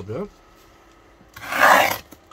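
A parcel wrapped in black plastic film and packing tape being handled: one loud, short rubbing scrape near the end.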